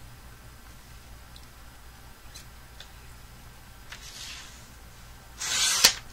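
A paper trimmer being used on a strip of cardstock: quiet handling with a few light ticks, then near the end a short scraping rush ending in a click as the blade carriage is pushed along its track to cut.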